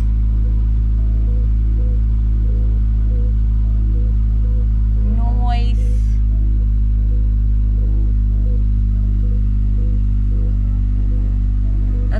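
Honda Civic wagon's D16A6 four-cylinder engine idling steadily at just under 1,000 rpm, heard from inside the cabin, with faint music playing over it. The engine runs smoothly after a new ignition control module, rotor and distributor seal.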